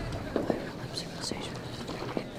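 Hushed, whispering voices over a low background, with a few short clicks about half a second and one second in.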